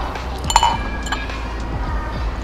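Glass clinking as a Cass beer bottle's glass neck taps the rim of a drinking glass while it is tipped to pour. A sharp clink with a short ring comes about half a second in, and a fainter one about half a second later.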